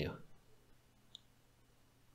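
Pause in a man's spoken narration: the last word fades out at the start, then near silence with a faint low hum and one faint small click about a second in.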